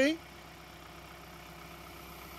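John Deere compact tractor's diesel engine idling steadily, a faint, even low hum with no change in speed.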